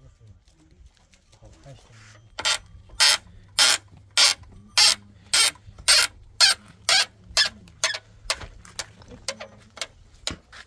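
A hand saw cutting through a wooden slat in steady strokes, just under two a second, about fourteen strokes starting a couple of seconds in and stopping shortly before the end.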